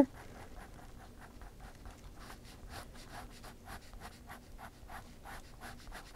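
Fine-tipped Faber-Castell ink pen scratching on sketchbook paper in quick, short hatching strokes, several a second, as shading lines are laid in.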